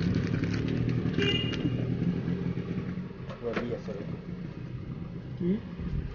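A motor engine running steadily, dying away about halfway through, with faint voices behind it.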